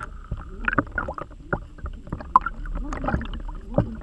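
Underwater water noise with irregular knocks and clicks, heard through a submerged camera as lures are pulled past it.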